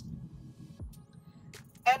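Low road and tyre rumble inside the cabin of a Mercedes-Benz C300 on the move, growing fainter after the first half second; the car's weak sound insulation lets this road noise into the cabin. A man's voice starts near the end.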